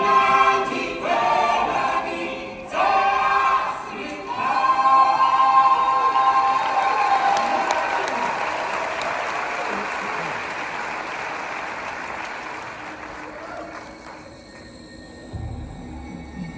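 A stage-musical cast's ensemble singing in chorus, ending on a long held note, then the theatre audience applauding, the applause slowly dying away. Low music starts near the end.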